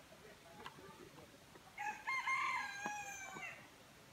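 A rooster crowing once: a single call of nearly two seconds, starting about two seconds in, with a stepped opening and a held, slightly falling end. A few faint knocks are heard around it.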